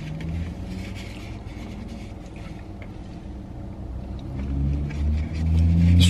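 Low motor-vehicle engine rumble heard from inside a car cabin, steady at first and growing louder over the last two seconds.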